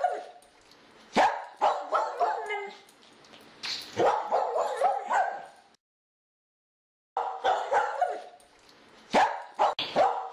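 A dog barking in repeated clusters of short barks, cut off to dead silence for more than a second in the middle before the barking resumes.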